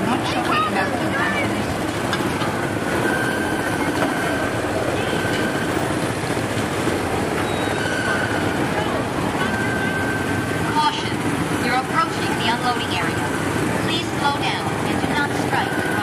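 Small gasoline engines of Tomorrowland Speedway cars running steadily, with people's voices in the background.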